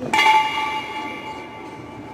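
A single metallic strike, like a bell or gong, ringing out with several clear tones that fade over about a second and a half.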